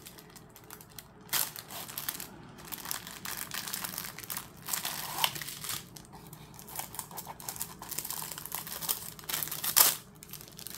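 Crinkly packaging of a small diamond painting kit being handled and unwrapped: irregular rustling and crinkling, with a sharp crackle about a second in and a louder one near the end.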